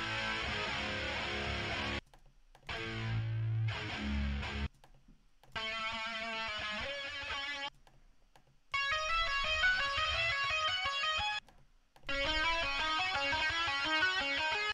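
The separate stems of a sampled melody loop played back one after another from a DAW, each a couple of seconds long with short silences between. The second stem carries low notes; the later ones play higher melodic patterns.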